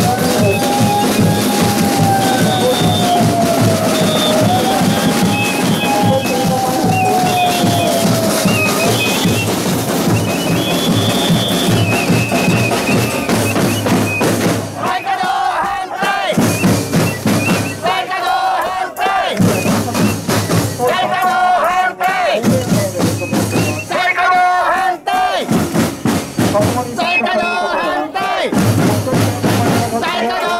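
Marching snare drums played hard in a fast, dense beat by a street drum group for about the first fifteen seconds. Then the drumming stops and a crowd shouts short chanted slogans, one shout about every three seconds.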